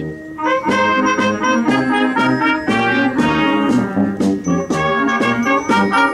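Brass band playing a tune in several parts, with trumpets over lower brass.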